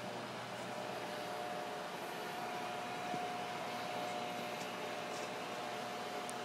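Steady machine-shop background hum with a faint high steady whine that sets in about a second in.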